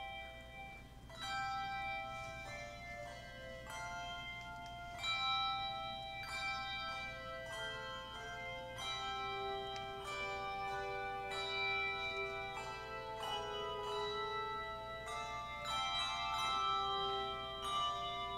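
Handbell choir playing: chords of struck handbells, changing every half second to a second, each ringing on into the next.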